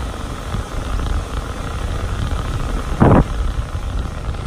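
Pet grooming stand dryer blowing steadily, a loud, even rush of air. A brief loud thump about three seconds in.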